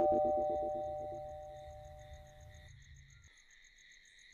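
A two-note chime ringing on and fading away at the close of a music cue, over a low pulsing drone that cuts off about three seconds in. Faint, steady cricket chirping runs underneath.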